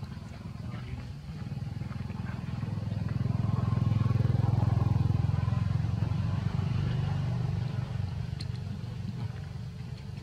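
Low engine rumble of a passing motor vehicle, growing louder about three seconds in, loudest around four to five seconds, then fading.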